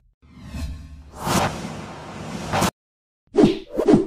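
Swoosh sound effects from an animated end card. A whoosh swells over about two seconds and cuts off sharply, then after a short silence there is a quick run of short pops and thwacks near the end.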